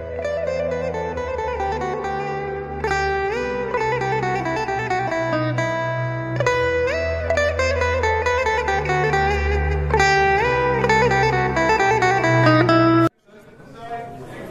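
Background music: a melody with sliding notes over a steady bass line. It cuts off suddenly near the end.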